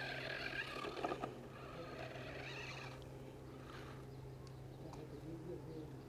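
Faint whine of a toy RC off-road car's small electric motor and gearbox as it drives over sand, stopping about halfway through, over a steady low hum.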